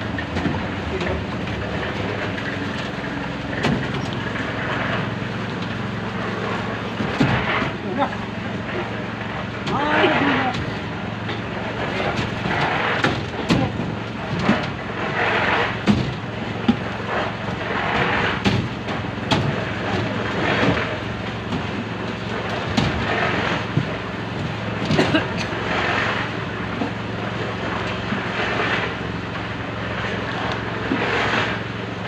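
A small engine running steadily, with intermittent voices and sharp knocks from work on the slab.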